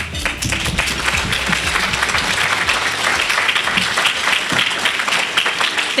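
Audience applauding steadily in a banquet hall.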